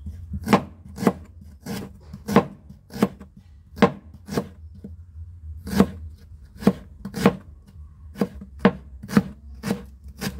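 Kitchen knife slicing through ginger and striking a wooden cutting board: about fourteen sharp knocks at an uneven pace of roughly one or two a second, with a pause of about a second just before the middle.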